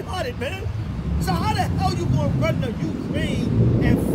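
A man's voice over street traffic. A low vehicle rumble swells from about a second in and is loudest near the end, as from a passing car or bus.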